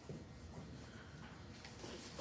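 Faint scratching of a marker writing on a whiteboard.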